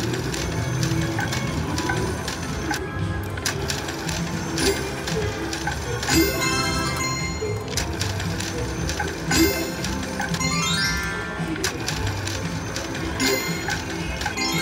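Cash Machine slot machine spinning again and again, with its electronic reel-spin and reel-stop sounds. Three rising runs of chime tones come through, over a steady casino-floor hubbub.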